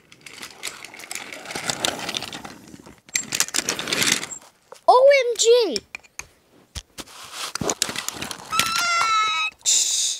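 A child's voice making wordless play sound effects: breathy hissing, then two loud rising-and-falling calls about halfway through, and a high held squeal near the end. A couple of sharp clicks come in between as the wooden toys are handled.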